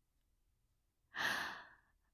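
A woman's single breathy sigh, starting about a second in and fading out within under a second.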